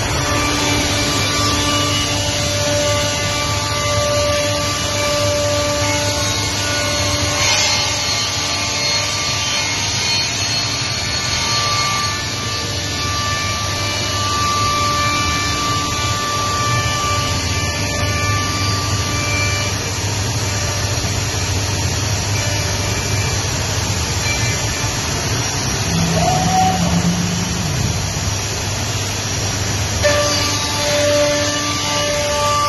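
Masterwood Project 416L CNC machining center running: a steady, continuous machining noise from its router spindle and traveling head as it works wood.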